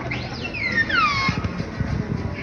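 R2-D2 replica droid's electronic whistles: a quick rising whistle, then several whistles sliding down in pitch, ending a little past halfway, over a low murmur of crowd noise.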